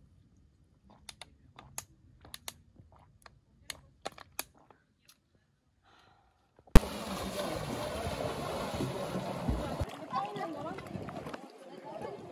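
A thin plastic water bottle crackling and clicking in a series of short sharp clicks as it is drunk from and handled. About seven seconds in, the sound switches suddenly to a loud, steady wash of water and wind noise, with some voice near the end.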